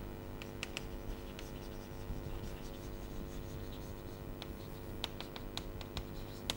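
Chalk writing on a chalkboard: short taps and scratches as the letters are stroked, coming quicker near the end, over a faint steady room hum.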